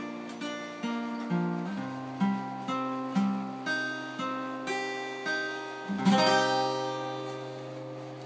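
Acoustic guitar played alone, picking single notes about twice a second, then a final strummed chord about six seconds in that rings out and fades as the song ends.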